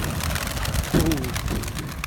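A flock of domestic pigeons taking off from the ground in alarm, many wings clattering and flapping at once. The birds were startled by a door opening.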